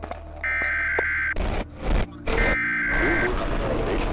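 Trailer sound design: two long electronic beeps, each about a second, with a short burst of static between them, over a low steady drone.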